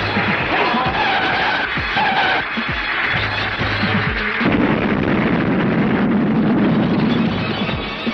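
Loud dramatic film background score with sustained held tones, with a few short impact sound effects.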